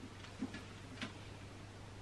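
A few faint, irregular clicks and taps from books being handled and held up, over a low steady hum.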